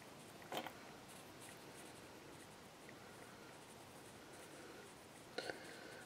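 Pencil lead scratching lightly on paper in short strokes, with two brief, louder knocks, about half a second in and again near the end.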